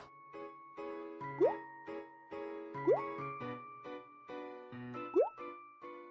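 Light, playful background music with a plucked bass, broken by three quick rising pop-like sound effects, the loudest sounds in it.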